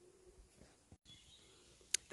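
Faint background noise with no clear source, cut off by a momentary gap about halfway through and ending with a small click.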